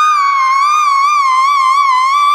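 Small plastic toy whistle blown as a melody instrument, holding one long note that wavers up and down in pitch, entered by a small step down from the note before.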